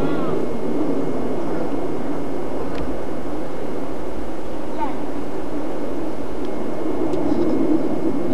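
A steady, low rumbling background noise, with a small child's short high vocalisations over it a few times.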